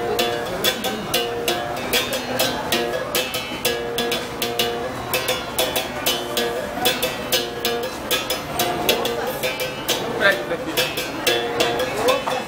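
Berimbau being played: a stick strikes its steel wire in a quick, steady rhythm. The note switches back and forth between a lower and a higher pitch as the wire is stopped and released.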